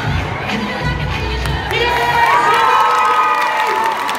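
Large crowd of teenage students cheering, shouting and screaming. Music with a heavy bass beat stops about halfway through, leaving long high-pitched screams over the crowd.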